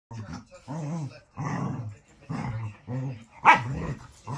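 Puppies play-fighting: a string of about six short, arching play-growls, with a sharp yip-bark near the end that is the loudest sound.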